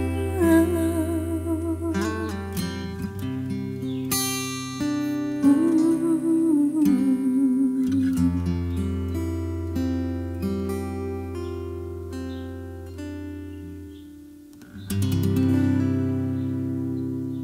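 Acoustic guitar playing a slow accompaniment, with a woman's wordless vocal line with vibrato over it in the first half. The guitar then rings on and fades, and a fresh strummed chord comes in about a second before the end.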